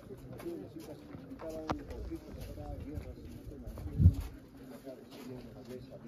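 Background chatter of people talking, with a low thump about four seconds in.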